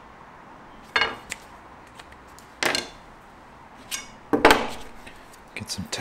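Small tools and objects being handled on a wooden workbench: about five short clatters and scrapes, the loudest about four and a half seconds in.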